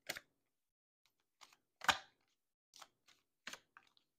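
Tarot cards being handled off camera: about seven light clicks and taps, scattered and uneven, the loudest about two seconds in.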